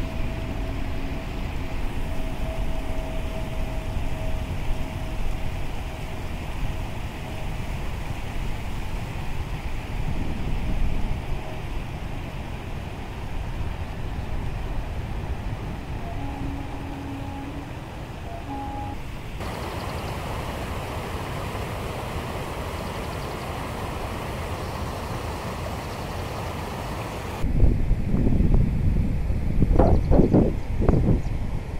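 A passenger train running along the track by the lake: a steady rumble with a faint held tone through the first ten seconds and a few short tones a little past the middle. In the last few seconds, wind buffets the microphone.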